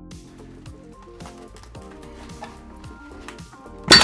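Background music with held notes. Near the end comes a single loud, sharp pop as the brake caliper piston comes free of its bore.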